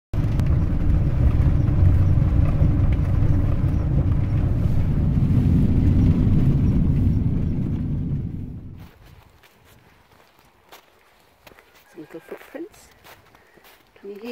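Loud, low rumbling noise that fades out about nine seconds in, followed by a few faint clicks and a brief, faint voice-like sound near the end.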